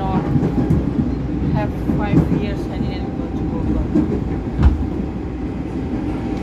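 Train running, heard from inside the carriage: a steady low rumble with a faint steady hum above it, and one sharp thump about three-quarters of the way in.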